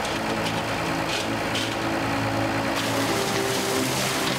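Water gushing out of an opened fish-transport tank, carrying sturgeon out with it. Sustained low tones run beneath the rush and shift about three seconds in.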